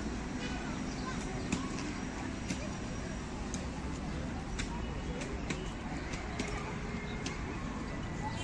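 Outdoor city-park ambience: a steady hum of nearby traffic with indistinct voices of passers-by and occasional bird chirps. Light sharp clicks come about once a second.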